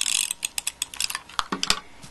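Hand-held adhesive tape runner drawn along a strip of ribbon, its mechanism giving a quick run of ratchet-like clicks for about a second, followed by two sharper clicks as it comes off the end.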